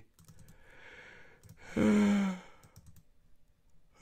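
A man sighs once: a faint breath drawn in, then a short voiced sigh out about two seconds in.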